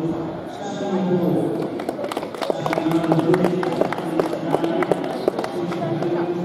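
Scattered hand clapping from a small audience: sharp, irregular claps starting about two seconds in and fading near the end, over a steady background of crowd chatter in a large indoor hall.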